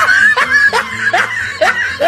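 Laughter: a run of short, rising 'ha' sounds, a little over two a second.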